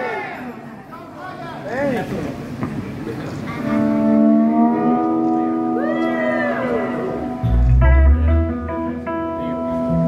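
Electric guitar coming in about three and a half seconds in with sustained, ringing notes and chords through an amp, after and under whoops and shouts from the audience. A deep low boom enters about three-quarters of the way through.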